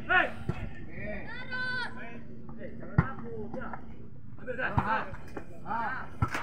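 Voices calling out across a football pitch during play, with one sharp knock about three seconds in.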